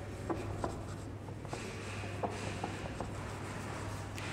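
Marker pen drawing on a whiteboard: faint rubbing strokes of the tip with a few light ticks as it touches down and lifts, over a steady low hum.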